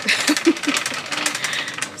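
Shopping cart rattling as it is pushed along, a fast, dense clatter from its wheels and wire basket; it is a noisy cart. A short laugh comes at the very end.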